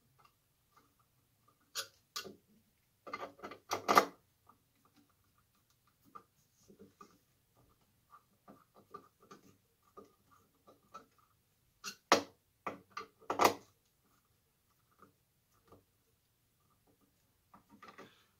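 Scattered light clicks and taps of a metal chandelier body and a cut-glass crystal arm being handled as the wire is worked through and the arm is lined up to screw in. A few sharper knocks stand out: a cluster about two to four seconds in, the loudest near four seconds, and two more around twelve and thirteen seconds in, with faint ticking between.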